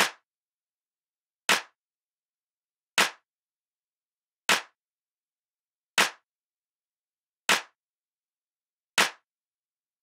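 Single hand claps, one every second and a half, seven in all: claps on beats one and three of a slow 4/4 rhythm, with silent rests on beats two and four.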